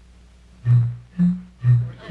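Three low, held bass notes of string-band music, going low, higher, low, about half a second apart, starting about half a second in.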